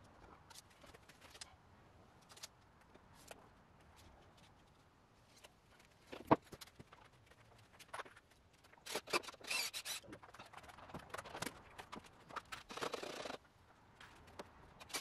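Wooden 2x4 boards being handled and pulled off a wooden cart frame during disassembly: scattered knocks and clunks, one sharp knock about six seconds in, a burst of clatter around nine to ten seconds, and a scrape of about a second near the end.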